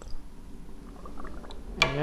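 Methylated spirits trickling faintly from the spout of a model traction engine's spirit burner back into a plastic bottle, with a brief knock just after the start.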